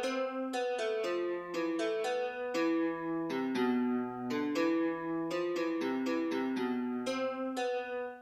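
Background music: a keyboard instrument playing a quick melody of struck notes, about four a second, each ringing briefly, with a last note ringing out at the very end.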